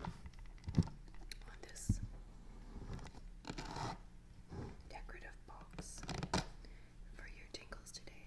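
Fingernails scratching and tapping on the embossed faux-crocodile surface of a box, in quick irregular scrapes and clicks. Two low knocks in the first two seconds as the box is set on the wooden table.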